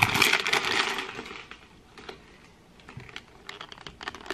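Foil-lined snack bag crinkling as it is handled and squeezed, loudest for the first second or so, then lighter crackles near the end.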